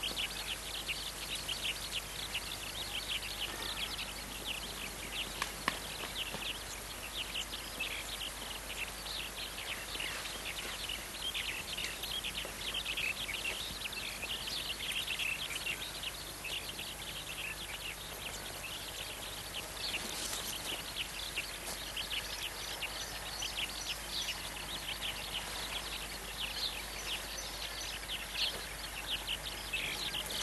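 A dense chorus of small birds chirping continuously, many rapid high chirps overlapping, over a faint steady background hum.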